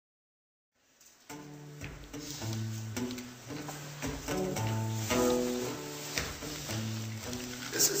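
Live plucked guitars playing a repeating instrumental intro over a low, recurring bass note, starting about a second in after silence.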